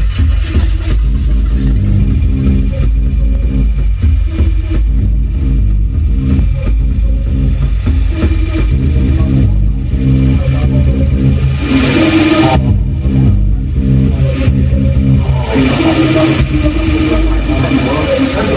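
Eurorack modular synthesizer playing a low, growling bass drone, with washes of noise swelling in about twelve seconds in and again near the end.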